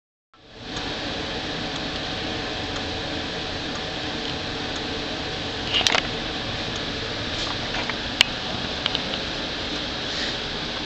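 Steady hiss and hum from a Westinghouse Columaire radio's speaker, with no programme audible yet. A brief rattle of knocks about six seconds in and a sharp click about eight seconds in.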